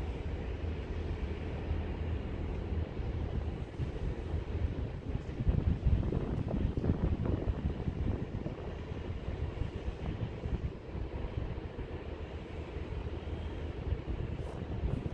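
Low steady hum from a VIRM double-deck electric train standing at the platform, ready to depart, with wind gusting on the microphone, loudest around six seconds in.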